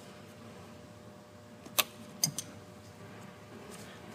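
A few sharp metallic clicks from pliers and a spring hose clamp as the clamp is moved onto the coolant hose's port: one about two seconds in, then two lighter ones close together just after.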